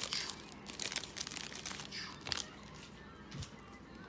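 Plastic foil wrapper of a trading card pack crinkling and tearing as it is worked open by hand: a run of small crackles that thins out after about two seconds.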